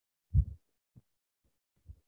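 Muffled low thumps over a video-call microphone: one louder about half a second in, then three faint ones.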